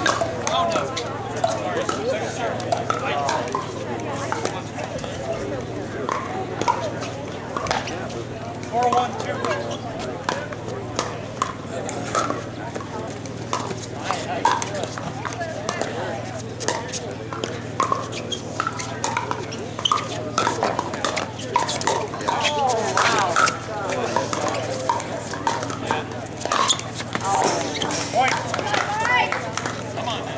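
Pickleball rally: paddles striking a plastic pickleball again and again, short sharp pops at an irregular pace, over the chatter of people around the courts and a steady low hum.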